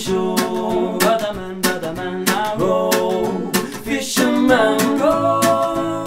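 Acoustic guitar strummed in a steady rhythm, about three strokes a second, with voices holding long sung notes over it.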